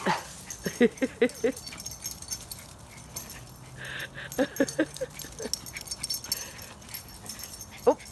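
Two small dogs playing chase, with whimpers and yips, and two short runs of a woman's laughter, about a second in and again about halfway through.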